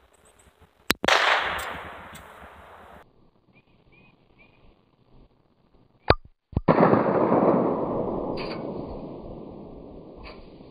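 .22 Magnum single-action revolver fired twice, about five seconds apart. Each sharp crack trails off in a long fading tail.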